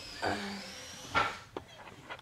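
A woman says a brief "uh". A little over a second in there is one sharp knock, followed by a few lighter clicks: repair work going on at a broken glass back door.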